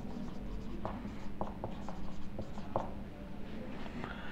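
Marker pen writing on a whiteboard: a run of short, faint strokes and light taps, over a steady low hum.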